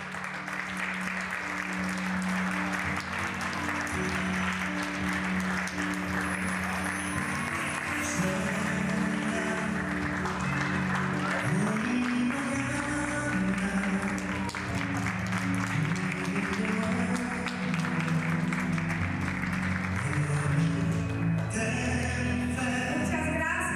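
Audience applauding steadily over music with held low notes.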